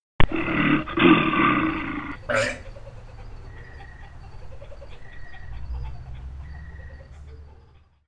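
A loud animal roar in two bursts, the second longer, followed by a brief rising whoosh and then a quieter low rumble that fades out.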